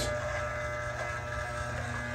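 Andis T-Outliner corded hair trimmer running with a steady electric hum while its blades are being oiled.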